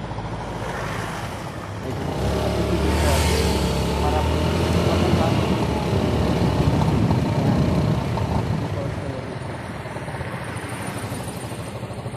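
A motor vehicle driving past on the street: its engine sound swells from about two seconds in, is loudest for several seconds, then fades away.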